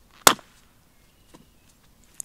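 A single sharp chop into a resinous pine stump as a piece of fatwood is split off, followed about a second later by a faint wooden knock.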